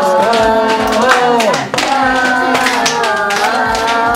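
Hand claps keeping a beat under a sung melody with long held notes.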